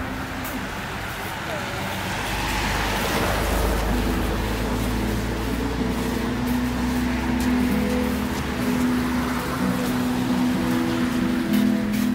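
A car drives past on a wet road, a low rumble with tyre hiss that swells about two seconds in and fades away by about eight seconds, over music with steady held notes.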